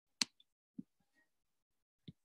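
A single sharp computer mouse click, followed under a second later by a faint low knock.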